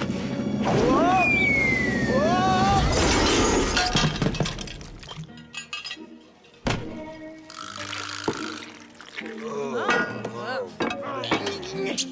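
Cartoon slapstick effects over music: yelling cries and a long falling whistle, then a noisy crash with breaking and clinking. A single sharp hit comes a little past the middle, and voices return near the end.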